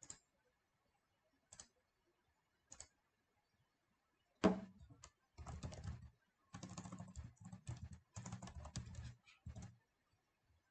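Computer keyboard typing: a few lone key clicks, then a louder knock about four and a half seconds in, followed by quick runs of rapid keystrokes with short pauses between them.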